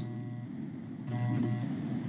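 Faint steady hum, joined about a second in by a soft machine-like whir made of several steady tones.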